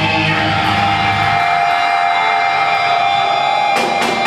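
Live heavy metal band playing with distorted electric guitar, bass and drums. About a third of the way in the bass and drums drop out, leaving a guitar note ringing alone, and the drums crash back in near the end.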